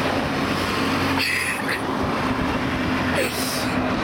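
Steady low rumble of a large vehicle's engine running, with two short hisses, about a second in and near the end.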